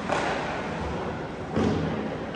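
Two dull thuds about a second and a half apart, the second the louder, over a steady background hiss.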